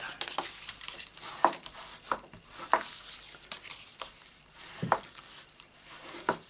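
A folded cardstock card base rustling and rubbing as it is handled and burnished by hand, with scattered sharp taps and scrapes of paper against the mat.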